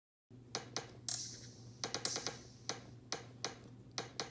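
A quick run of sharp, short clicks and taps, about three a second, over a low steady hum, starting a moment in after a brief dead silence.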